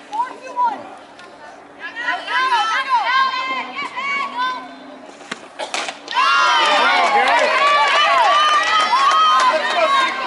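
Many softball players' voices shouting and cheering at once, overlapping chatter that swells to a loud, dense clamour from about six seconds in. A single sharp crack comes just before the swell.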